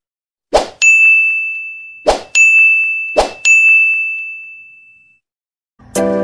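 Sound effects of a subscribe-button animation: three short clicks, each followed by a bright bell-like ding that rings out and fades, the dings about a second apart. Music starts right at the end.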